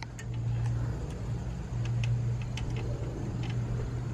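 Light scattered clicks from a bolt and fitting being worked by hand on an aluminium ladder mounted to a bus, over a steady low engine-like hum.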